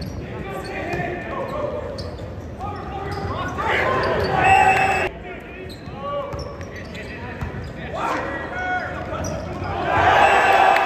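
Indoor volleyball match in a large hall: players and spectators calling out and cheering, with thuds of the volleyball being bounced and struck. The sound drops abruptly to a quieter level about halfway through.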